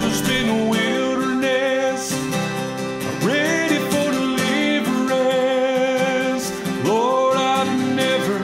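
Acoustic guitar strummed, with a man singing a country gospel song over it.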